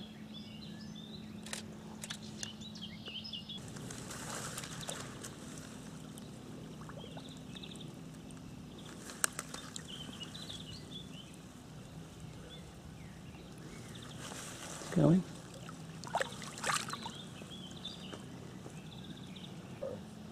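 Bankside sounds by a lake: small birds chirping on and off over a faint steady hum, with light splashing of water as a carp is released by hand. A short voice sound stands out about three-quarters of the way through.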